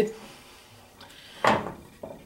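A stainless steel pot set back down on the stove burner after being turned: a faint click, then one short, loud metallic clunk about one and a half seconds in.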